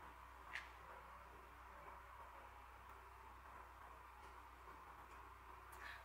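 Near silence: room tone, with one faint, short sound about half a second in.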